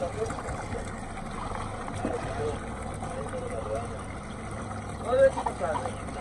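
Sport-fishing boat's engine running with a steady low hum.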